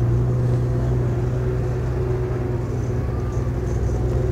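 An engine running steadily with a low, even hum that does not change in pitch or level.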